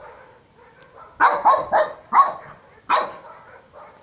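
A dog barking: about five short barks in quick succession, starting about a second in.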